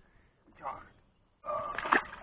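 A small carp released back into the water, landing with a splash near the end.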